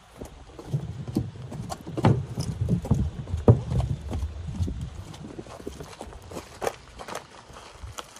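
Rapid, irregular knocking on wooden boardwalk planks as an electric unicycle's wheel rolls across them, loudest in the middle and thinning out near the end.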